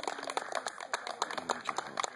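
Guests applauding, with many quick, irregular hand claps.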